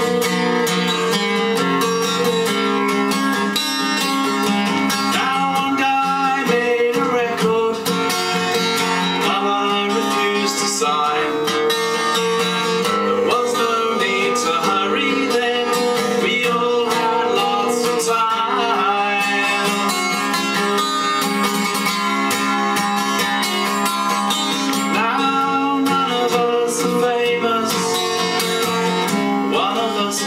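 Solo acoustic guitar, played steadily to accompany a man singing a folk song.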